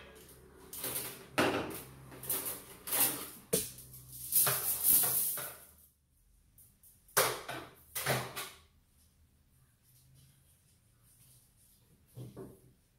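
Handling noise of bonsai wire being pulled and worked against the branches: a run of short rustling, scraping swishes through the first half, another pair a second or so later, then quiet.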